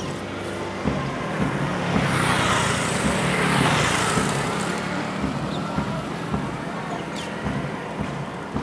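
A motorbike passing close by: engine and tyre noise swell to a peak about three and a half seconds in, then fade away.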